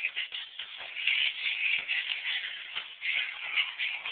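Dense, uneven rustling and scuffling of fabric and camera handling close to the microphone, with many small knocks.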